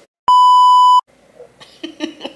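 Censor bleep: a single steady beep tone of under a second, starting about a quarter second in, with the sound cut to dead silence just before and after it.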